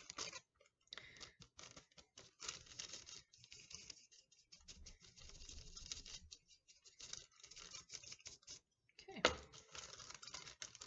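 A large powder brush dabbing and sweeping over a gelatin prosthetic on wax paper, with the paper crinkling as it is handled: a faint, irregular run of soft scratchy strokes.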